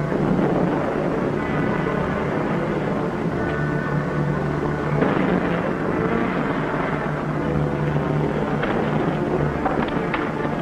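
A car engine running as the car drives off, under background music with sustained notes.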